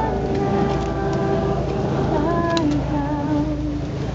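A crowd singing a slow church gospel hymn together, many voices holding long notes, over a steady low hum.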